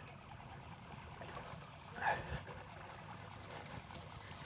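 Quiet background noise on the water while a small hooked bass is reeled in, with one short louder sound about two seconds in.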